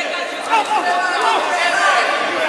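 Several spectators' voices shouting and calling out over one another around a boxing ring, with no single voice clear.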